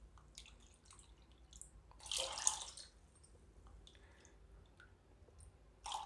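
Water poured from a cup into a bowl of tamarind-mint spice water. A short splashing pour comes about two seconds in; otherwise it is faint.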